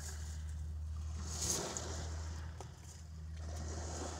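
Wake waves from a passing barge washing against the riverbank: a soft rushing wash that swells, eases off briefly about two and a half seconds in, then comes back, over a low steady engine drone.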